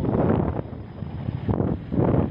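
Wind buffeting the microphone in uneven gusts, strongest near the start and again near the end.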